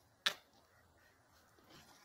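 A single short snap of a tarot card being handled, about a quarter of a second in, then faint room tone.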